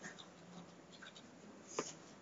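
Faint typing on a computer keyboard: a few scattered key clicks, with a sharper one near the end, over a low steady hum.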